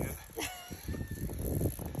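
Wind rumbling on the microphone, with a brief faint voice fragment and a few faint short tones.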